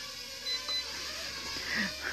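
Holy Stone HS170 mini quadcopter's motors and propellers whining steadily as it flies fast. Two short high beeps come about half a second in.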